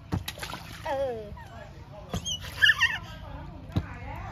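Toddlers splashing in a shallow pool: a few sharp slaps on the water, and a short burst of a small child's high-pitched squeals a little after the middle, the loudest sound.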